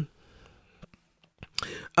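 A short pause in conversation with a couple of faint clicks, then a voice begins reading aloud about a second and a half in.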